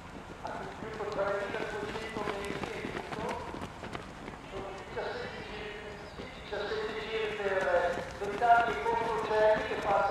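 Raised, drawn-out human voices, loudest near the end, over the quick patter of running shoes on the track as runners pass close by.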